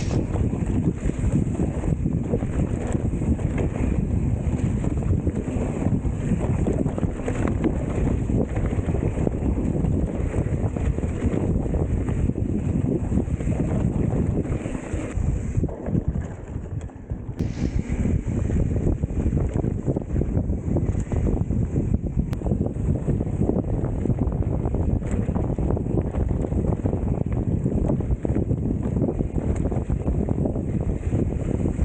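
Wind rushing over an action camera's microphone as a mountain bike descends a dirt trail, mixed with the bike rattling over bumps and its tyres running over dirt and dry leaves. The noise eases briefly a little past halfway, then picks up again.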